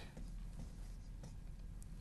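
Faint scratching and a few light taps of a stylus writing on a glass touchscreen display, over a steady low hum.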